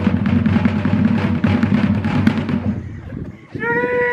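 A loud drum roll that starts suddenly, with rapid, dense strokes, then stops about three quarters of the way through. Near the end a held pitched note with a slight downward bend comes in.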